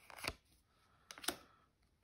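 Two soft rustles of Magic: The Gathering trading cards being slid through the hands, one about a quarter second in and another just past a second in, with near silence between.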